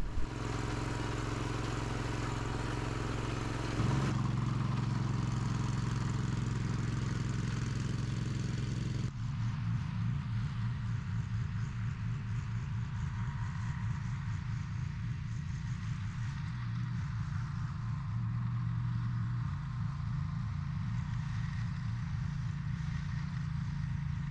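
Small engines of walk-behind hay mowers running steadily under load while cutting grass. The sound changes abruptly about four seconds in and again about nine seconds in, after which it is less hissy and more uneven.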